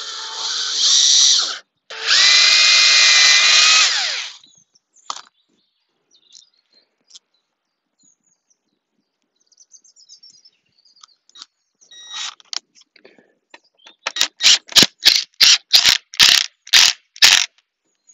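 Cordless drill boring a pilot hole through thin wooden frame battens in two steady runs, the first rising in speed and the second easing down in pitch at its end. After a pause, a cordless driver sets a 50 mm screw into the corner in about a dozen quick trigger bursts, roughly three a second.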